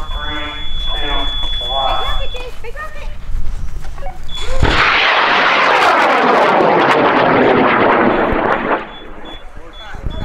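High-power rocket motor burning after liftoff: a sudden loud rushing roar with crackle begins about four and a half seconds in, holds steady for about four seconds, then drops off sharply. Before it, a voice speaks over a steady high tone.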